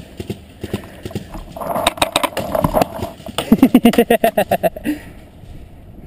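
A man laughing in a quick run of breathy "ha" pulses near the middle, with sharp clicks before and through it.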